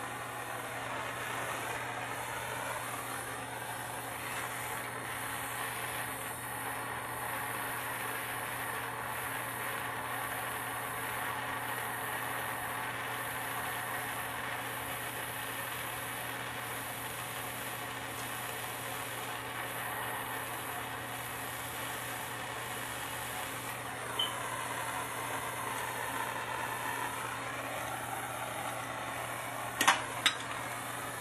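Plumber's gas hand torch burning with a steady hiss while heating a copper elbow joint for soldering. A sharp click comes late on, and another right at the end.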